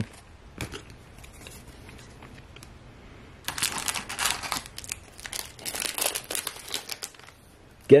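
Foil wrapper of a hockey card pack crinkling and tearing as it is opened, in several bursts starting about three and a half seconds in, after a few seconds of light clicks from cards being handled.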